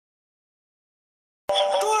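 Dead silence for about a second and a half, then a sudden click as the sound cuts back in and a boy's voice calls out near the end.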